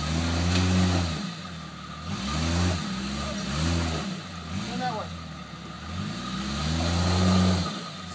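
Jeep Cherokee XJ engine revving hard four times, the pitch climbing and falling with each surge and the last one the longest. The Jeep is trying to climb a muddy three-foot undercut ledge and does not make it.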